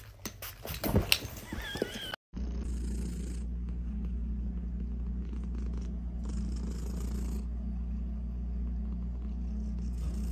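A domestic cat purring steadily and close up, a continuous low rumble that starts about two seconds in. Before it come a few clicks and a short wavering squeak.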